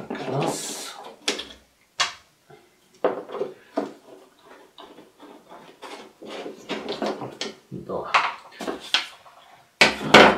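Small screwdriver and hard plastic headlight housing of a Nissan Leaf clicking, tapping and scraping as a bumper-mounting bracket is unscrewed and taken off. There is a rustling scrape about half a second in, followed by scattered sharp clicks and knocks.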